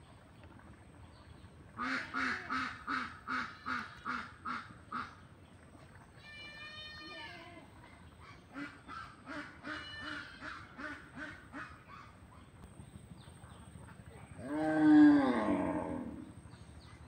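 Duck quacking in rhythmic series of about three quacks a second, the first run fading as it goes, with a longer call between the runs. Near the end comes the loudest sound, a longer call that falls in pitch.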